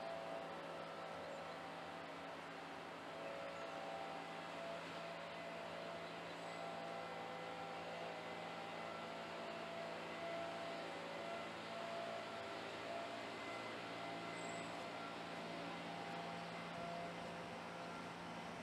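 Quiet outdoor town ambience: a steady low hum with faint tones that come and go, and two faint high chirps, one about six seconds in and one about fourteen seconds in.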